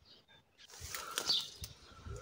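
A bird calling outdoors, with a short falling whistle a little over a second in, after a near-silent start.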